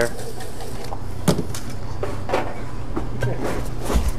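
Bar-room background with a steady low hum and three sharp knocks about a second apart, from bottles and glassware being handled while a drink is made.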